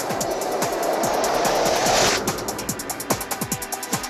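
Electronic TV segment-intro jingle. A swelling rush of noise cuts off about two seconds in, giving way to a fast electronic drum beat.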